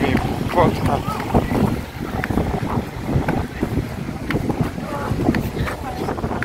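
Gusty bura wind buffeting the phone's microphone with a constant low, rumbling flutter. Voices come through faintly in the first second or two.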